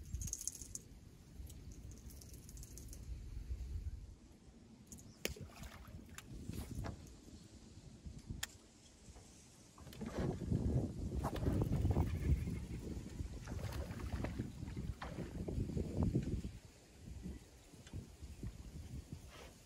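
Water sloshing and knocking against the aluminum hull of a small fishing boat, heaviest in the second half, with a few light clicks and knocks.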